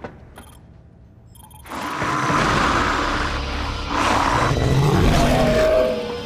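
Horror film soundtrack: a hushed stretch with a few faint high clicks, then, a little under two seconds in, a sudden loud swell of deep rumbling score and sound effects. Near the end it carries a creature-like roar that slides down in pitch.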